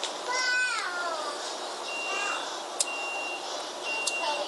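A recording played back through a small Sony recorder's speaker: a high, pitched cry about a second long that falls in pitch, then a shorter one, over steady hiss. A faint high beep repeats on and off from halfway, with one sharp click.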